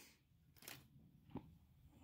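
Near silence: room tone with two faint clicks.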